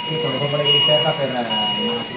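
Electronic alarm of hospital patient-monitoring equipment sounding in repeated long, steady beeps, about three in quick succession, with people's voices talking underneath.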